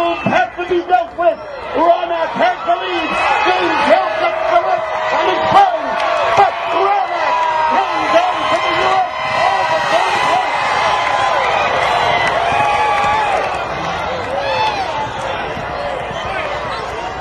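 Crowd of racegoers cheering and shouting over a race caller's voice on the loudspeakers as the steeplechase comes to its finish. The excited calling dominates the first few seconds, then the cheering swells into a steady din and eases off near the end.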